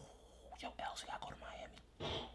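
Faint, hushed speech close to a whisper, over a steady low hum.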